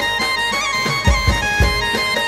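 Live garba band playing an instrumental stretch: a held, reedy melody line over drum beats that come in about a second in.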